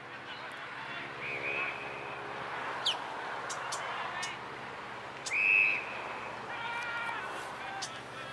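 Football umpire's whistle: a quieter short blast about a second in, then a loud, sharp blast about five seconds in, which stops play. Spectators call out just after the loud blast.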